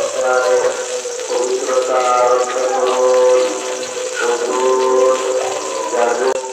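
Background music: a sung Islamic nasheed, one voice holding long, wavering melodic notes without pause.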